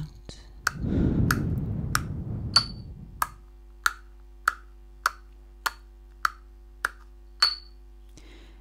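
Ceramic pestle striking pills in a ceramic mortar: a steady series of sharp clinking taps, about one every 0.6 seconds, each ringing briefly. A soft rushing noise lies under the first few taps, and a faint low hum runs beneath.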